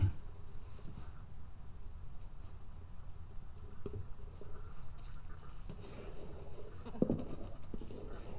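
Blue-gloved hands rubbing over the wax surface of an encaustic painting on a board: a faint scratchy rustling, with a soft knock about seven seconds in.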